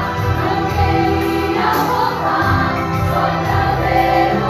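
A group of young women singing a gospel worship song in Portuguese, a lead singer on a microphone with a choir of voices behind her, over a musical accompaniment.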